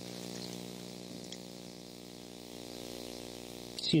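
A steady electrical hum with a ladder of even overtones, unchanging throughout, with faint paper rustling as Bible pages are turned.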